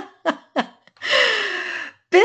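A person's laughter tailing off in three short bursts, then, about a second in, a long breathy 'ohh' whose pitch falls.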